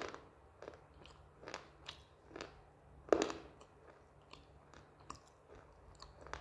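Close-miked crunchy chewing of a hard, dry roasted slate piece: a string of irregular crisp crunches, the loudest about halfway through.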